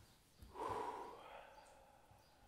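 A person breathes out hard once, about half a second in, and the breath dies away within about a second.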